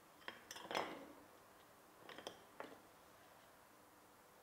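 Light clinks and taps of thin fluted metal tartlet moulds being handled and set down on a board, a few short knocks in the first second and a couple more about two seconds in.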